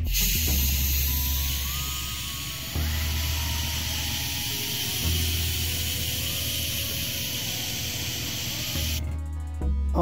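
Airbrush spraying paint onto a masked model wing in a steady hiss, which stops about nine seconds in. Background music plays underneath.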